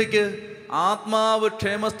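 A man preaching in Malayalam through a microphone, drawing out long held syllables in a chant-like cadence.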